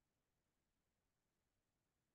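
Near silence: only a faint, even noise floor.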